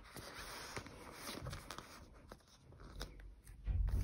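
Faint rustling and crinkling of clear plastic binder pocket pages being handled, with a few soft clicks, as a postcard is fitted into a pocket.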